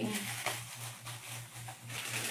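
Faint rustling and light handling noises as items are cleared up and thrown away, over a steady low hum.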